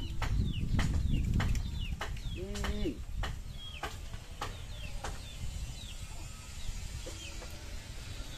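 Birds calling with short, falling chirps and one longer arched call just before three seconds in, amid scattered sharp knocks and a low rumble that fades after the first second and a half.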